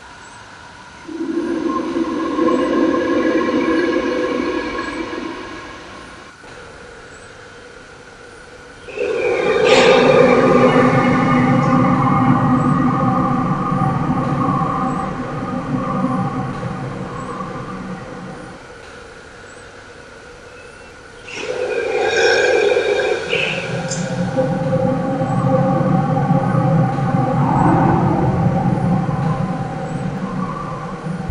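A dark, droning sound track of sustained layered tones over a low rumble. It swells three times, and the second and third swells break in suddenly, about nine and twenty-one seconds in.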